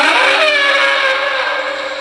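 Dinosaur call sound effect for a brachiosaurus: a loud bellow that starts suddenly and falls slightly in pitch, then holds and fades a little, over soft background music.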